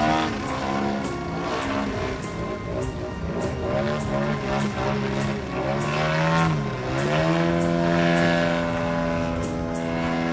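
Engine and propeller of a radio-controlled aerobatic model plane in flight, its note rising and falling as it manoeuvres. The pitch drops a little past halfway, then climbs and holds steady.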